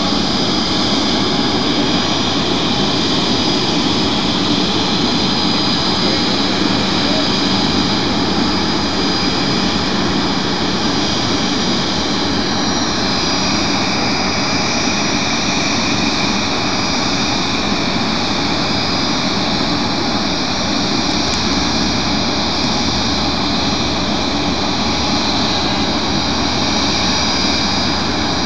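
Jet engines of a Bombardier CRJ regional jet running with a steady high whine during pushback. A low hum joins about two-thirds of the way through.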